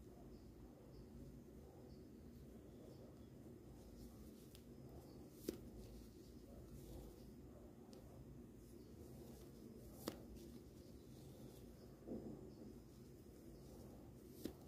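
Near silence: faint room tone with soft handling of a crochet hook and T-shirt yarn, and two small clicks about five and a half and ten seconds in.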